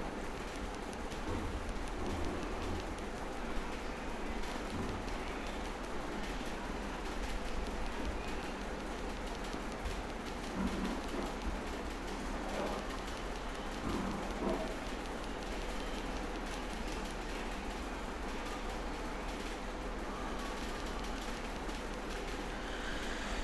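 Steady hiss of background noise with a low electrical hum, the room tone picked up by a voice-over microphone; a few faint short sounds rise out of it around the middle.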